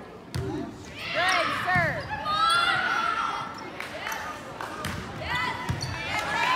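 A volleyball being hit during a rally in a gym: a sharp serve contact about a third of a second in, then several more ball contacts. Voices are calling out around it.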